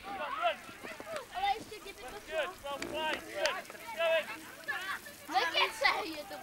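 Children shouting and calling out on a playing field, many short high voices one after another, loudest near the end.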